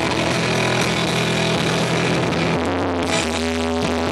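Live rock band playing loudly through the venue's PA, heard from the audience. A dense, noisy wall of band sound changes about two and a half seconds in to thinner, sustained pitched tones.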